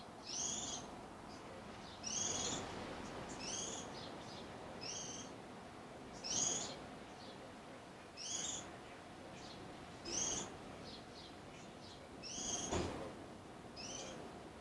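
A small bird calling over and over: a short, high, two-part call about every second and a half.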